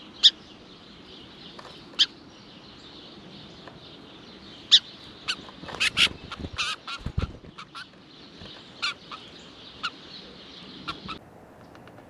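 Sharp, short bird call notes from small songbirds feeding on snow. They come singly every second or two, with a quick flurry of them about halfway through, over a steady high hiss, and they cut off abruptly near the end.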